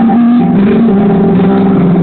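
Live band music from a stage, heard loud from within the crowd, with steady held notes.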